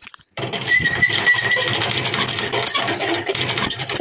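Table saw's bevel-tilt handwheel being cranked: a rapid, steady mechanical rattle from the adjustment gearing, with a brief high squeal about a second in.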